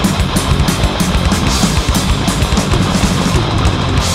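Death/thrash metal: distorted guitars over fast, dense drumming, loud and unbroken.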